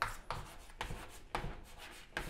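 Chalk scratching on a chalkboard as letters are written, a quick series of short strokes.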